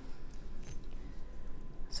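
Low, steady room hum with a few faint small ticks and rustles as fingers handle a small silver ring and a loose stone.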